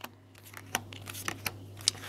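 Thin cardboard game cards being dealt out and laid one by one onto a wooden tabletop, giving a handful of light taps and soft slides.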